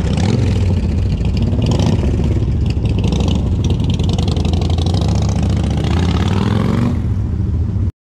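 Motorcycle engine running loud, a V-twin cruiser with short exhausts moving off from a standstill, its note rising briefly near the end as it pulls away; the sound cuts off abruptly at the end.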